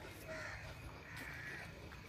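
Birds calling, several raspy calls one after another, over a low steady rumble.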